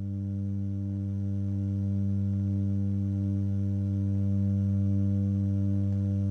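Digital West Coast-style oscillator of an AE Modular GRAINS module running the Scheveningen firmware, sounding one steady low note rich in overtones, growing slightly louder over the first second or two.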